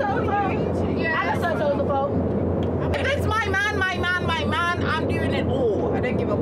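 Steady low drone of a private jet cabin in flight, with women's voices talking over it.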